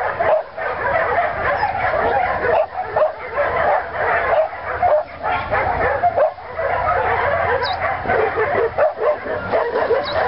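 Several dogs yipping and whining excitedly in a continuous, overlapping chorus.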